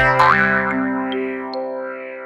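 Short cartoon logo jingle ending: a last hit with a quick upward slide, then a held synthesizer chord that slowly fades out.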